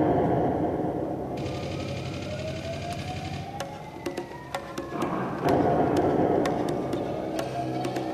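Music with a slowly rising tone about halfway through, with scattered sharp clicks over a dense low backing.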